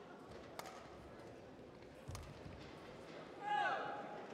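A short, high squeal of a court shoe on the badminton court mat near the end, its pitch bending down, over a faint murmur in the hall. Two soft knocks come earlier.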